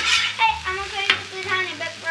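Metal spatulas scraping and clacking against a flat-top griddle as fried rice is chopped and turned, with food sizzling on the hot steel. Several sharp clacks stand out.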